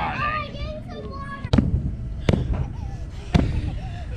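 Three sharp knocks, about a second apart, after voices at the start.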